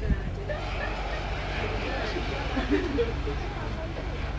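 Low steady hum of a train standing still, with people talking over it and a short knock right at the start.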